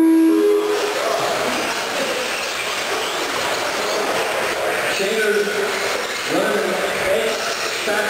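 Electric 1/10-scale RC stadium trucks racing on an indoor dirt track, a steady noisy mix of motor whine and tyres on dirt, carrying through the hall. A short steady two-pitch beep sounds at the very start.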